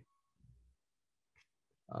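Near silence in a pause between spoken lines, broken by a short low sound about half a second in and a faint click near the middle; a man's voice starts again at the very end.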